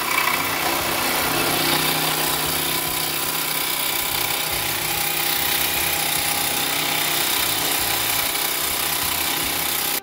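Reciprocating saw with a fresh metal-cutting blade running steadily, sawing through the stuck bolt of a front control-arm mount.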